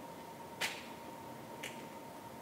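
A sharp click, then a fainter, shorter click about a second later, over a faint steady hiss and a thin high hum.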